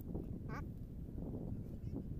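A single short spoken "haan" about half a second in, over a steady low rumble of outdoor background noise.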